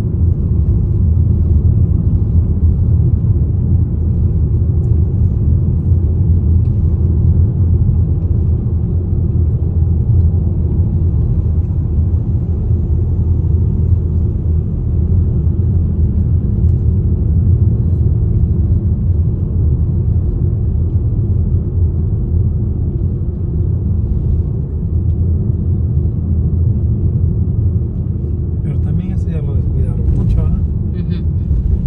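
Steady low road rumble of a moving car, heard from inside the cabin.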